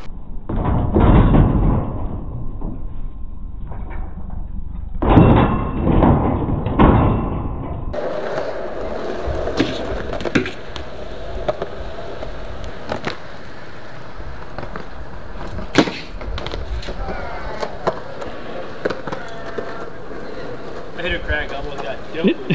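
BMX bike riding on concrete: tyres rolling, with heavy knocks and scrapes in the first few seconds. After that comes a steadier rolling noise with a few sharp clicks.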